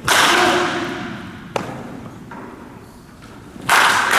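A wooden baseball bat strikes a pitched ball with a loud crack near the end, echoing through the indoor hall. Another loud knock with a long echo comes right at the start, and a short sharp click about a second and a half in.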